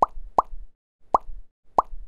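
Four short, pitched cartoon-style pop sound effects, one after another with brief silences between them.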